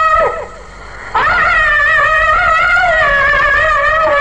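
A man's voice chanting a Sindhi naat in long, held, slightly wavering notes. The first note slides down and breaks off just after the start, and after a short pause a new long note begins about a second in.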